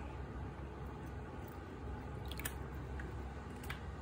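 Water poured from a plastic jug through a funnel into a plastic bottle, a soft steady trickle, with a few light clicks of plastic handling in the second half.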